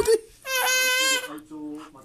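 An infant crying out: one steady, high-pitched wail held for under a second, then a fainter, lower call.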